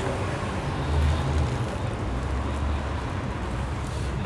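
Street background noise: a steady low rumble of passing traffic.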